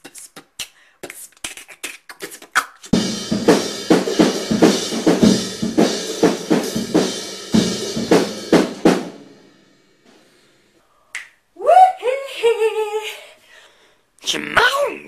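Scattered clicks, then a dense rhythmic beat of percussive hits mixed with voice-like tones, like beatboxing. It runs for about six seconds and stops suddenly. After a short silence comes a drawn-out vocal sound that rises and falls in pitch.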